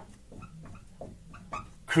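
Dry-erase marker squeaking on a whiteboard in short, faint squeaks as letters are written. A man's voice starts loudly near the end.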